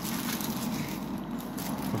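Paper coin packets and a plastic bag rustling steadily as they are handled.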